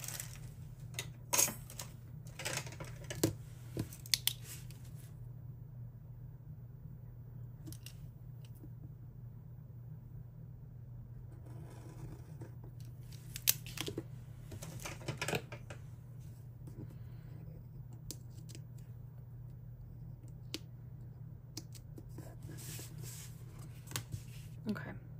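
Small craft scissors snipping a paper sticker in a few quick cuts in the first few seconds, then paper stickers and sheets rustling as they are handled and pressed onto a planner page, with a further cluster of clicks and rustles about halfway through. A low steady hum runs underneath.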